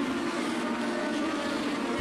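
Pack of Legend race cars running at speed around the oval, their Yamaha four-cylinder motorcycle engines blending into one steady drone of even pitch.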